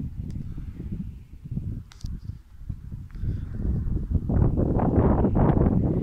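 Wind buffeting the microphone of a moving truck as a low, gusty rumble. Over the last two seconds the rush of a truck passing close alongside swells loud.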